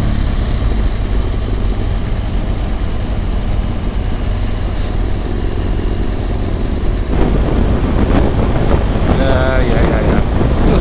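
Motorcycle engine running at low speed in slow-moving traffic, picked up by the bike-mounted camera's microphone. About seven seconds in, the noise steps up and grows rougher as the bike pulls away and gathers speed, with wind on the microphone.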